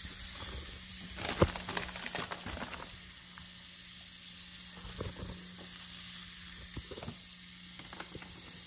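Round slices of deli meat sizzling on a hot electric contact grill: a steady sizzle with scattered sharp crackles, the loudest about a second and a half in.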